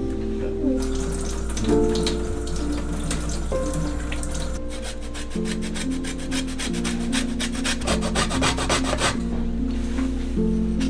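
Lemon rind rasped against a microplane zester in quick, rhythmic strokes, starting about halfway in and stopping shortly before the end, over soft background music.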